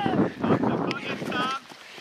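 Wind buffeting the camera microphone, a rumbling rush that cuts off about a second and a half in, with a brief high-pitched child's shout over it just before.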